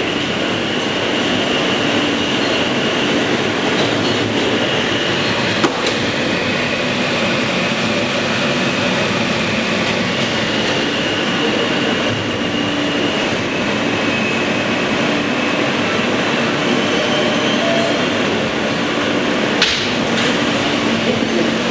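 Interior noise of a New York City Subway R160 car under way: a steady rumble of wheels on rail with a faint high whine that comes and goes. A single sharp click sounds about six seconds in and another near the end.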